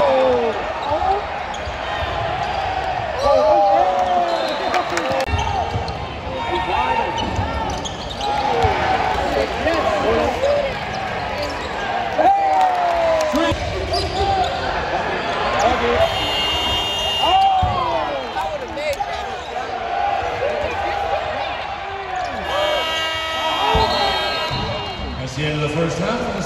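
Basketball game play heard from the stands: sneakers squeaking in short chirps on the hardwood court and the ball bouncing, over a steady murmur of crowd voices in a large arena.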